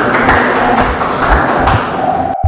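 Audience applause: a crowd of people clapping steadily together.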